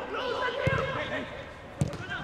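A football kicked twice, two dull thuds a little over a second apart, under players' shouts and calls carrying across an empty stadium.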